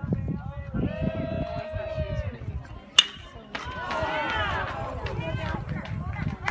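A metal baseball bat strikes the ball with one sharp ping about three seconds in, then spectators shout and cheer. Voices of people calling out are heard before the hit.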